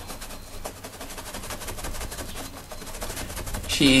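Paintbrush tapping and dabbing against the canvas, a fast, even run of small taps.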